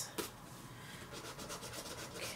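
Lottery scratch-off ticket being scratched, a faint run of quick, short rubbing strokes on the ticket's coating, with one sharp click shortly after it starts.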